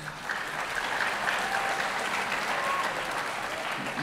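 Audience applauding: a steady patter of clapping that starts just after the speaker stops and runs on for several seconds.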